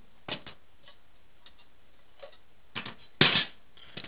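Clicks and a short clatter of an opened DVD disc drive being handled on a wooden bench: a few light clicks of its plastic and metal parts, then a louder scrape-like knock about three seconds in as it is set down in a new position.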